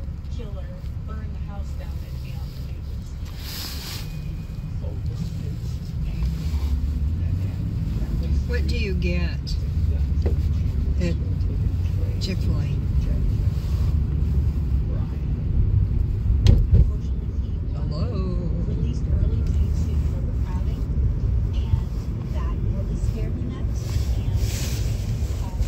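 Low rumble of an Airbus A320 jet on landing approach, growing louder from about a quarter of the way in and loudest around two-thirds through. Faint talk runs underneath.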